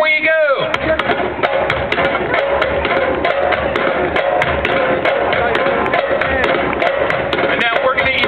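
Djembe hand drums playing together in a fast, dense rhythm of sharp strikes, starting just after a voice in the first half second; voices come in again near the end.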